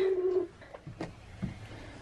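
A hen's low, steady call that fades out about half a second in, followed by a few faint short knocks.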